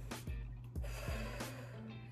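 Soft background music with a steady beat, under a person's deep breath in and out.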